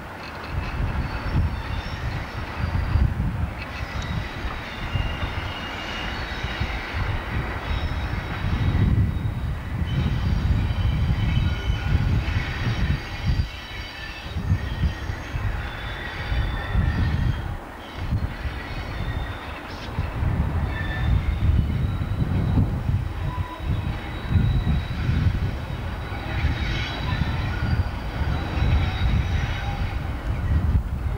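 Class 37 diesel locomotive and its coaches moving away round a curve: the English Electric V12 diesel engine gives a low rumble, with high-pitched wheel squeal on the curve coming and going.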